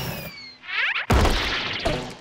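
Cartoon sound effects: a falling whistle as a character flies through the air, a quick swishing sweep, then a loud crash of the landing about a second in, with clatter after it.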